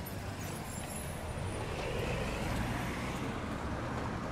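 Road traffic: a steady low rumble of car engines and tyres, swelling a little about halfway through as a car passes.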